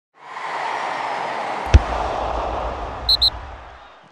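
Logo-intro sound effects: a rush of noise swells in, a sharp hit a little under two seconds in sets off a deep low rumble, and two short high pings near the end before it fades out.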